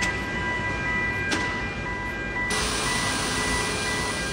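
Steady machinery hum and hiss with high, steady whining tones. About two and a half seconds in it changes suddenly to a brighter, louder hiss.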